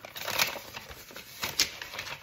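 Paper rustling and crackling as a paper envelope is handled and opened, with two louder crinkles, one about half a second in and one near the end.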